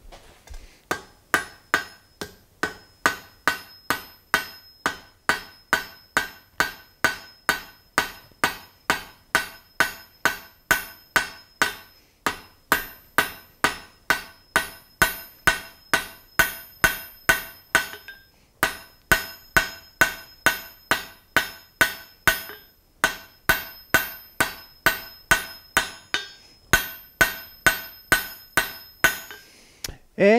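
Hand hammer striking red-hot iron on an anvil, about two blows a second with a few brief pauses, each blow ringing. The smith is drawing out a taper on a forge-welded bar.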